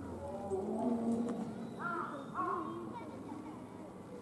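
Indistinct voices of several people talking in the background, with two short, higher arched calls about two seconds in.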